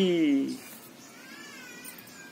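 A young child's drawn-out, wavering vocal sound that breaks off about half a second in, followed by a faint short voice.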